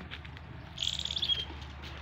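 A short, high-pitched rapid trill from a bird, about half a second long, ending on a brief held note about a second in.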